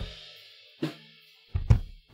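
Recorded drum kit playing back: a hit right at the start with a cymbal ringing out and dying away, a single hit just under a second in, then kick and snare hits resuming near the end. The two kick-drum mics (kick in and kick out) are phase-aligned by an automatic phase rotation, so the kick has its full bottom end.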